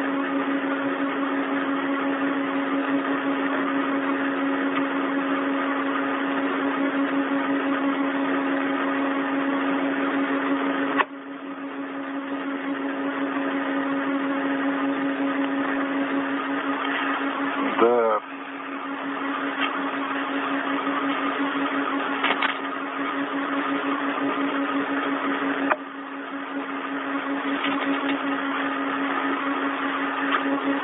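Steady hiss and hum of an open radio voice channel. It drops out briefly twice, and a short warbling tone sounds about 18 seconds in.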